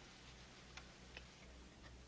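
Near silence: faint room tone with a few faint, short ticks.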